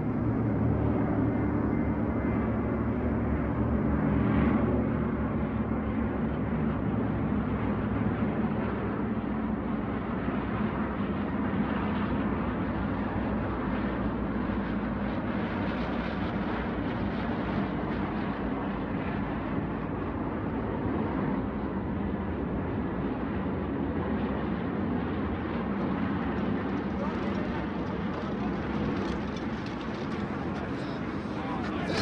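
A formation of twin-engine piston transport planes, Douglas C-47 Dakotas, droning steadily overhead.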